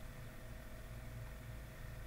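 Faint steady room tone: a low hum under a soft hiss.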